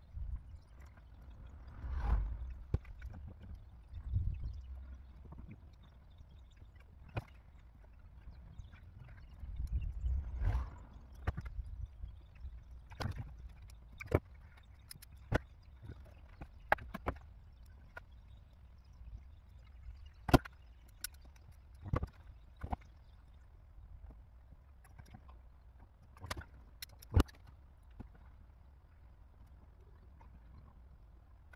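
Hands working on wiring inside a car's open tailgate: irregular small clicks and taps scattered throughout, with a few duller bumps in the first ten seconds and the sharpest clicks in the second half.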